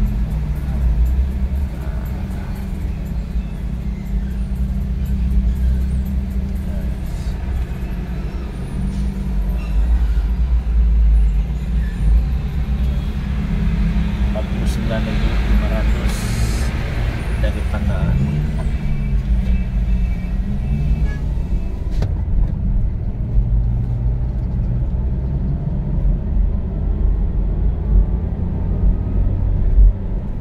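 Car cabin noise, a steady low engine and road rumble, as the car pulls away from a toll gate and picks up speed onto the motorway.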